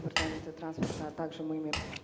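Faint voices in a council chamber, with a few light clinks.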